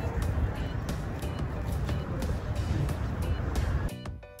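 Background music with a steady percussive beat over a dense, low rumble of ambient noise.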